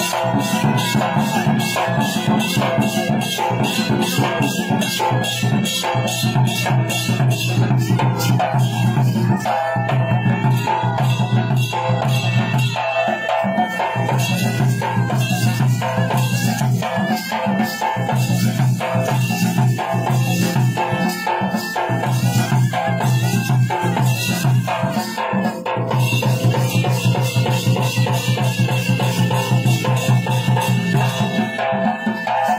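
Live Odia danda nacha folk music: a large barrel drum beaten in a fast, steady rhythm together with other percussion, over sustained pitched tones.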